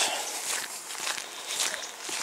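Footsteps of a person walking, quiet and irregular.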